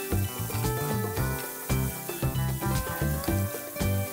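Background music with a repeating bass pattern and held melody notes, over the faint sizzle of a stir-fry being stirred in a pan.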